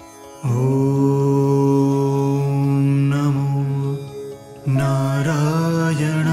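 Male voice chanting a devotional mantra in long held notes over a soft sustained drone. The voice enters about half a second in and holds one low note, breaks off briefly near four seconds, then holds a higher note.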